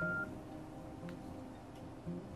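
A single short electronic beep from a Nokia X3-02 phone right at the start, a notification tone as a storage-location notice pops up, followed by faint background music with soft sustained notes.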